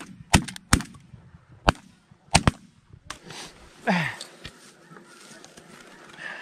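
A volley of shotgun blasts from several hunters firing on a flock of ducks: about six shots in quick, uneven succession over the first two and a half seconds. After that come honking calls, one falling call about four seconds in.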